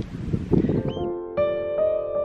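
Wind rumbling on the microphone with a single short bird call about a second in, then soft piano music starts halfway through with slow, held notes.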